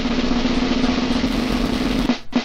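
A snare drum roll with a steady low tone held underneath it, growing a little brighter in its last half second.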